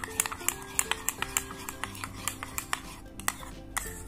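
Light background music, with a metal teaspoon clicking against a plastic bowl a few times a second while thick clear shampoo and salt are stirred.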